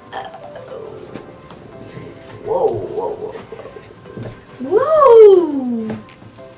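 Background music under a child's vocal exclamations: a short wavering sound about two and a half seconds in, then a loud, long 'ooh' near the end that rises and then slides down in pitch.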